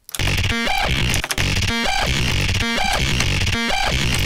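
Heavily distorted, OTT-compressed bass wub made from a voice recording time-stretched far out, played back from the DAW: a dense, gritty bass with a pitched, voice-like tone surfacing about once a second.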